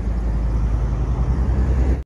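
Steady low outdoor rumble with no voice.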